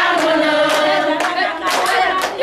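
A group of women singing together without instruments, with hand claps keeping time.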